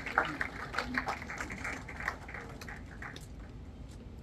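Scattered audience clapping mixed with low murmuring in a hall, thinning out and stopping about three seconds in, leaving only a low room hum.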